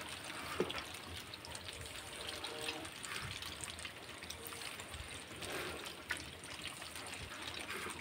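Faint splashing and small ticks at the water surface of a bucket packed with catfish fry, which are churning the water as they take feed.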